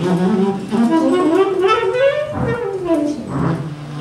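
Live jazz combo playing, with a saxophone soloing over the rhythm section. The sax line sweeps up in pitch, then back down.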